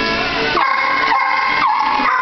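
Kennelled dogs howling: long held notes, each sliding down into a steady pitch, once about half a second in and again near the end.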